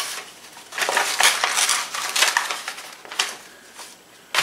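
A mailed envelope being opened by hand: crinkling and tearing in a quick run of short bursts, then a few fainter rustles near the end.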